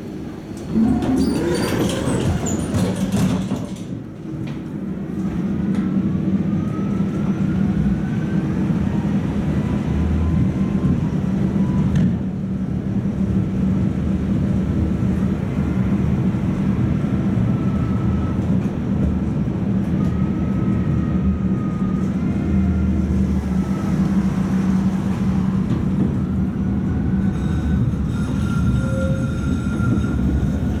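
Tatra T3 tram running, heard from inside the passenger car: a steady low hum of motors and wheels on the rails with faint rising and falling whines. A loud rattling clatter comes in the first few seconds.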